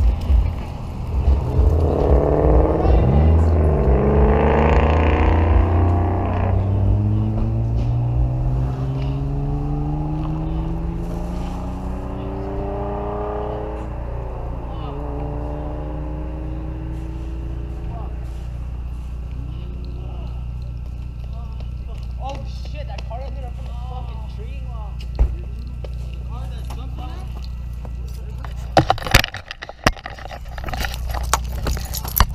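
A vehicle engine idles steadily throughout while a second engine note climbs slowly in pitch over roughly the first dozen seconds. Distant voices come through in the second half, and a few sharp knocks sound near the end as the camera is handled.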